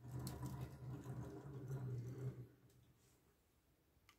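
A 1/50-scale diecast Mercedes-Benz Arocs tractor unit and multi-axle Nooteboom ballast trailer model pushed by hand across a wooden tabletop, its many small wheels rolling with a low rumble and light clicks for about two and a half seconds before it fades.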